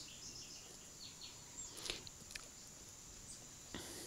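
Quiet outdoor background with a faint, steady, high-pitched insect drone, and a couple of soft clicks about two seconds in as the lid of a plastic thermos is taken off.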